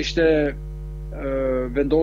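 Steady electrical mains hum under a man's speech, which includes a drawn-out, level-pitched hesitation sound about a second in.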